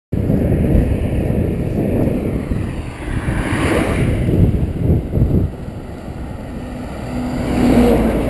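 Wind buffeting the microphone of a camera on a moving bicycle. Near the end a truck draws alongside, adding a steady engine hum that grows louder.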